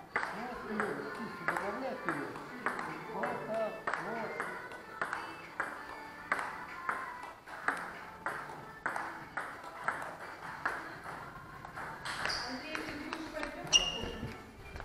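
Table tennis balls clicking on the table and on paddles in a steady rally rhythm, about two hits a second. There is a louder sharp clack near the end.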